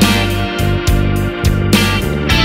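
Blues-rock band playing an instrumental intro: electric guitar over bass and drums, with a regular beat marked by cymbal hits.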